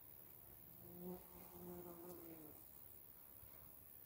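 A bee buzzing faintly as it flies among the flowers: a low hum that comes in about a second in, swells briefly, and fades out a second and a half later with its pitch sagging slightly.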